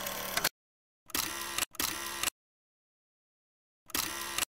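Edited-in camera sound effect: mechanical whirring bursts, each about half a second long and opening and closing with a click, like a film camera's shutter and winder. One burst ends just after the start, a pair follows about a second in, and another begins near the end, with dead silence between them.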